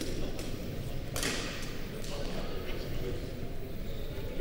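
A badminton racket strikes a shuttlecock once, about a second in, with a sharp crack that rings briefly in the gym hall. Voices murmur in the background throughout.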